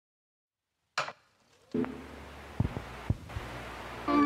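Edited intro sound effects: a sharp hit about a second in, then a low rumbling drone with three deep thumps.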